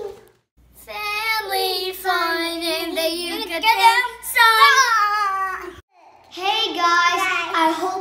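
Children singing a short channel intro jingle, stopping briefly a little before the end and then starting again.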